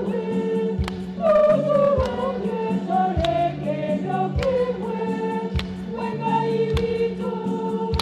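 Choir singing a hymn over a steady beat struck about every 1.2 seconds, as the Mass ends and the procession leaves the altar.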